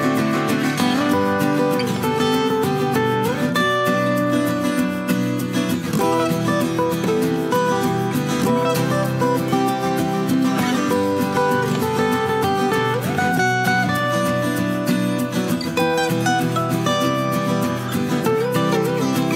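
Background music: a strummed acoustic guitar playing chords.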